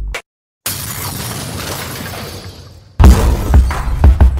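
A hip hop beat cuts off, and after half a second of silence a noisy crash-like sound effect sounds and fades away over about two seconds. About three seconds in, a new hip hop beat starts with heavy bass kicks.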